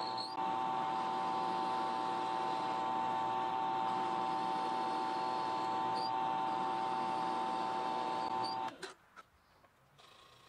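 A drill press running steadily with a whine while its bit bores tuner holes through a wenge guitar headstock. It cuts off near the end.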